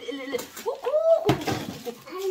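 People talking in a small room, with a single sharp knock about a second and a half in.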